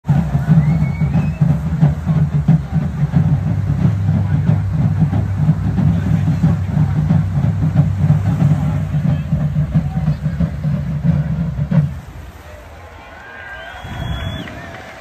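Loud low rumble of wind buffeting a phone microphone outdoors, with beachgoers' voices faint beneath it. The rumble cuts off about twelve seconds in, leaving quieter background voices and a few distant calls.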